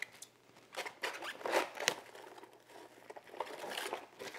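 Plastic cling wrap crinkling in irregular bursts of rustles and sharp crackles as it is pulled out and stretched over a stainless steel mixing bowl.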